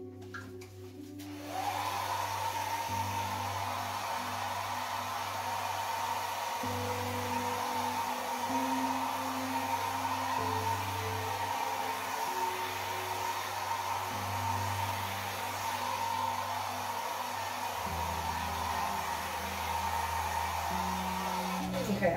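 Handheld hair dryer switched on about a second and a half in, its motor whine rising briefly and then running steadily as it blows out a puddle of poured acrylic paint. Soft background music with held low notes plays underneath.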